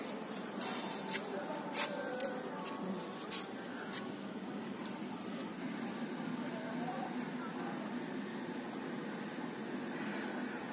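A handful of short, light taps and clicks over the first four seconds, then only a steady, quiet background hiss.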